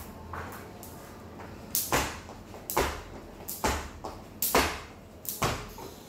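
Jump rope skipping on a tiled floor: the rope slaps the tiles and shoes land in paired knocks, about one jump a second, starting a little under two seconds in.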